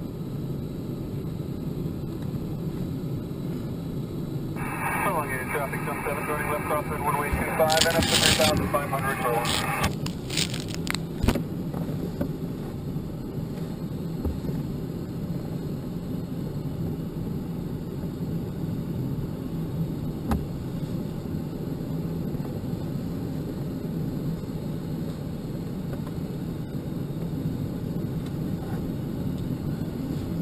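Steady rush of airflow in the cockpit of a Schleicher ASW 27B sailplane in flight. From about five seconds in, a voice comes over the cockpit radio for about five seconds, followed by a few clicks.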